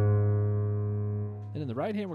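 Piano chord held on a Korg SV1 stage keyboard, ringing out and slowly fading. A man's voice starts talking about a second and a half in.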